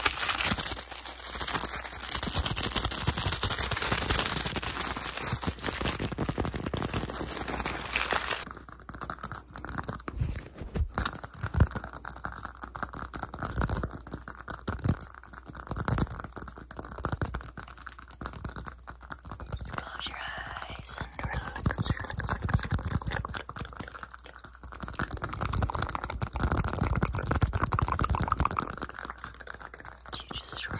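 Close-miked ASMR handling of a small white cup: dense rubbing and crinkling for about the first eight seconds, then sparser taps and scratches with short pauses.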